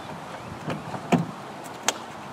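Three short sharp knocks or clicks over a steady background hiss, the middle one loudest.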